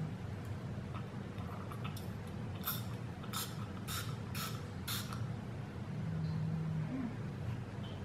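Pump spray bottle misting five short sprays into the mouth, the strokes coming a little over half a second apart, about three seconds in.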